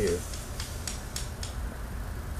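A few faint light metallic clicks as jumper-cable clamps and a test wire are handled at a starter motor, over a low steady hum.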